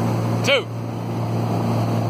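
A towboat's engine running steadily under load, a constant low drone, with the rush of wash and wind over it. A single word is shouted about half a second in.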